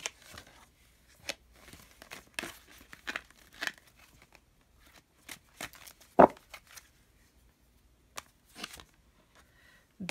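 Oracle cards being handled: scattered short papery rustles and slides as cards are drawn and laid down. A single sharp snap about six seconds in is the loudest sound.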